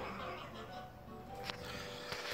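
Faint background television audio, music with some voices, from a children's TV show playing in the room, with a single click about one and a half seconds in.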